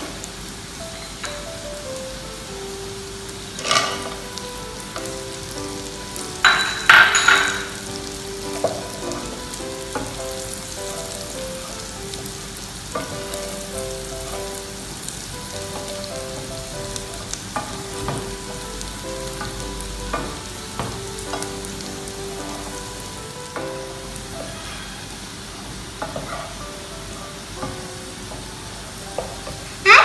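Shallots and cashews frying in ghee in a saucepan, a steady sizzle, while a wooden spoon stirs through them. A few short, louder sharp sounds come about four and seven seconds in.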